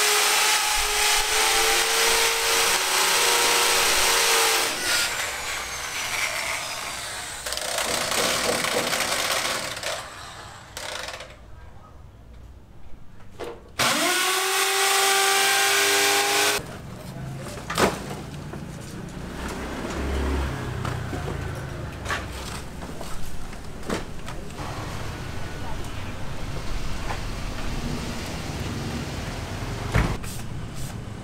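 A corded electric power tool working against a concrete ceiling runs steadily for about the first four seconds, then fades away. Near the middle it starts again with a rising whine and runs for about three seconds before stopping abruptly. After that come quieter, irregular clatter and a few sharp knocks.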